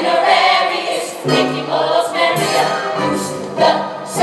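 A stage musical's full ensemble singing together in chorus over pit-orchestra accompaniment.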